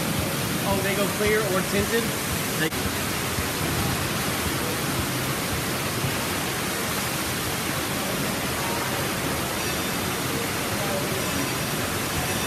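Steady rushing and splashing of water from the fountain jets and spouts of a water play structure, with faint voices in the first two seconds.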